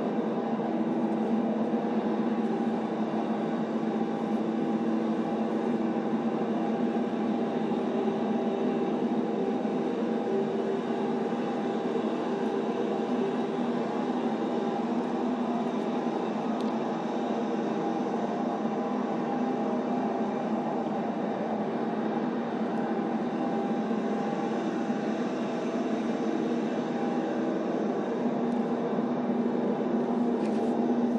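An audio recording played back over courtroom speakers: a steady, even rumble of noise with a low hum and no voices.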